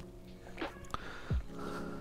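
Faint background music with a few held notes, under two or three soft low knocks as a steering rack is handled and its input shaft turned by hand.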